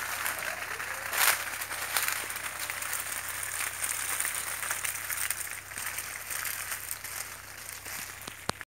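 Water being sprayed onto the hanging pots and leaves of grafted sapodilla plants, a steady splattering hiss with a louder burst about a second in.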